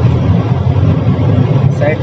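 Steady low engine and road rumble of a moving Mahindra Bolero, heard from inside its cabin while it follows close behind a dump truck.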